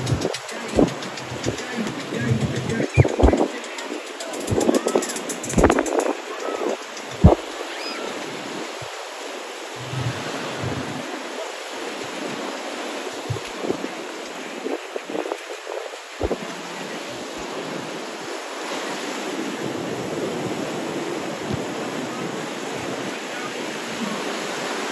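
Small waves breaking and washing up on a sandy beach, a steady wash that grows louder after the middle. In the first several seconds, beachgoers' voices and a few short sharp knocks sound over it.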